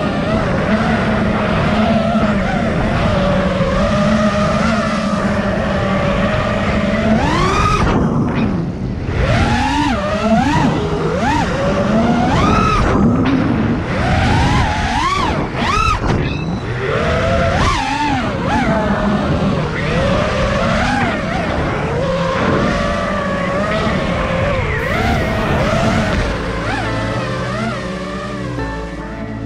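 The motors and propellers of a 5-inch FPV racing quad (T-Motor 2207 brushless motors) whine loudly, heard from the quad itself. The pitch holds fairly steady at first, then swoops up and down sharply and repeatedly through the middle as the throttle is punched and chopped for freestyle moves, before settling again.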